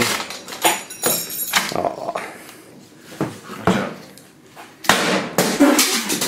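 An irregular series of sharp bangs as a laptop's optical disc drive is smashed against a concrete floor, metal and plastic breaking apart.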